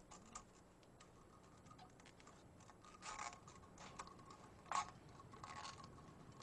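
Quiet clicks and scrapes of steel wire and nails being handled on a wooden plank while a makeshift one-string guitar is built, with one sharper click a little before the end.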